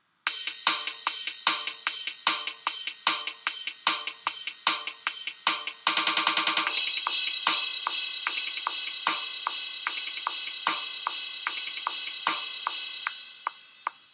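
Programmed drum beat from GarageBand's Rock Kit software instrument playing back, an even beat at about two and a half hits a second. A fast roll comes about six seconds in, then crash cymbals ring over the beat until it fades out near the end.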